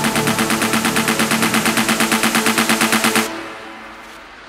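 Techno track build-up: a fast roll of repeated drum hits over held synth tones. It cuts out a little over three seconds in, leaving a faint fading tail before the drop.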